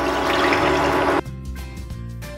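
Water poured from a glass bowl into a non-stick pan, splashing against the pan's bottom; the pour cuts off suddenly a little past a second in, leaving background music.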